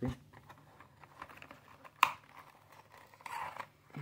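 Cardboard model box and clear plastic blister being handled as the box is opened and the blister slid out: light scratching and rustling, one sharp click about halfway, and a brief rustle near the end.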